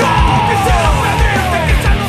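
Heavy punk-metal rock band recording, with a fast, steady kick drum under dense guitar-band sound. Through the first second and a half, several long tones slide downward in pitch.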